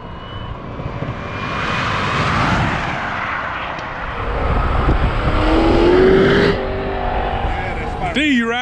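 A car driving at highway speed: road and wind noise swell, then an engine note rises as it accelerates, and the sound cuts off suddenly about six and a half seconds in.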